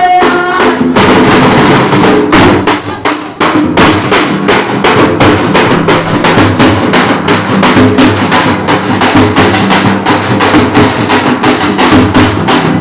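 Dafda frame drums struck with sticks in a fast, driving rhythm. A sung line ends in the first half-second, and the drumming briefly drops away a little after three seconds in before picking up again.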